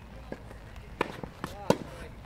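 Tennis ball being hit back and forth: a faint racket strike from the serve, a sharp pop of the ball about a second in, then the loudest crack near the end as the returning player's racket strikes the ball.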